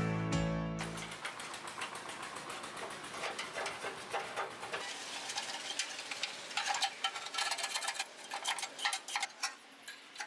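Guitar music fades out in the first second. Then comes a run of small irregular clicks and scrapes: a thin metal pick prodding and scraping flaky rust on the rusted steel frame of a Honda Super Cub C50.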